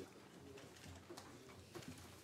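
Near silence: room tone of a large chamber with a few faint low sounds and soft ticks.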